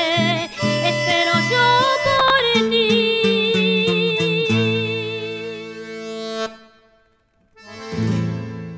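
Accordion and guitars play the closing bars of a rasguido doble. The guitars strum the rhythm under the accordion's wavering melody, and the piece ends on a long held final chord that stops about six and a half seconds in.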